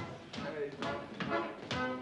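Oom-pah-style Bavarian music with sharp hand slaps in time, about two a second, from a Schuhplattler-style slapping dance.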